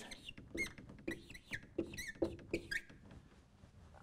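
Whiteboard marker squeaking on the board in a run of short, high-pitched strokes with small ticks as numbers are written, fading out about three seconds in.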